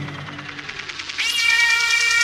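Electronic dance music from a live set: a low synth drone fades under a fast ticking pulse. About a second in, a louder high-pitched synth tone enters with a meow-like quality.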